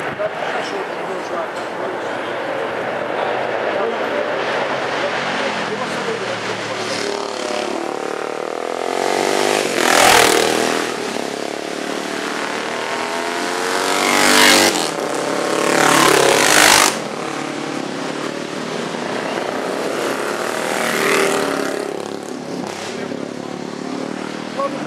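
Classic racing motorcycles passing one after another, with engine noise from the circuit in between. Each pass swells up loudly and fades away. The loudest passes come about ten seconds in and twice around fifteen to seventeen seconds in.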